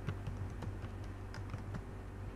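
Computer keyboard being typed on: an uneven run of quick key clicks, about four a second, over a steady low hum.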